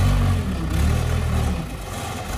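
A vehicle engine running at low revs, its speed rising and dropping slightly a few times.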